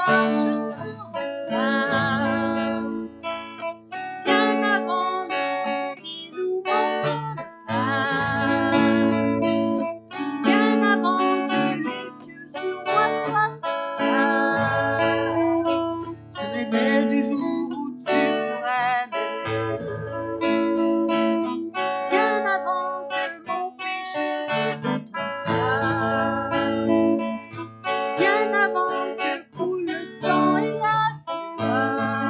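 A woman singing a worship song in French, accompanying herself on a strummed acoustic guitar, in phrases with short breaths between them.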